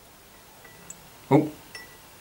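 Faint, sharp glassy tick as a G9 halogen capsule's filament blows with a flash, then another faint tinkle near the end. The filament is burnt right through, with no clean break left to rejoin, so the bulb cannot be revived.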